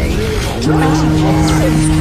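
A dense jumble of many animated-video soundtracks playing at once: music, cartoon voices and sound effects layered over each other. A steady low held tone drops out briefly about half a second in and then resumes.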